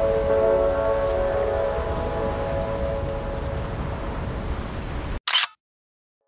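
Wind buffeting the microphone outdoors, with a steady hum of several tones underneath. It fades slowly and cuts off abruptly near the end, followed by a brief sharp burst of noise.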